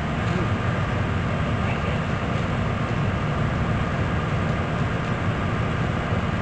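Steady low rumbling background noise with no clear single source.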